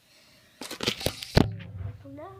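Handling noise from a phone being moved: a run of rustles and clicks about half a second in, ending in a sharp knock, then a low hum.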